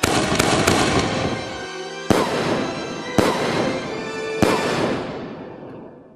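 Fireworks going off: a loud rush of hissing and crackling with a few quick cracks at the start, then three sharp bangs about a second apart as three aerial shells burst, fading away near the end.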